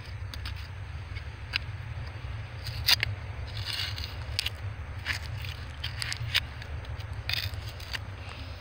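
Fingers scraping and digging through gravelly sediment, with irregular clicks of small stones, as a fossil shark tooth is worked loose from the bank. A steady low rumble runs underneath.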